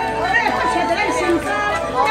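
Several voices talking over one another in a hall, with no other distinct sound.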